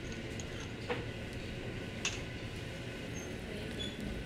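Steady background noise of a working kitchen stove, with a low hum. A metal spoon gives two faint clicks against the cup or pan as herb butter is scooped in, about one and two seconds in.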